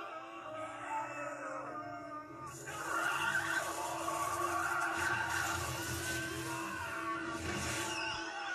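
Film soundtrack played from a television: a crackling electric-energy sound effect with a steady drone under music, swelling louder and hissier about two and a half seconds in.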